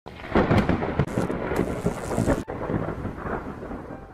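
Thunder rumbling in several loud surges under the hiss of heavy rain; the rain hiss cuts off suddenly about two and a half seconds in and the rumble fades.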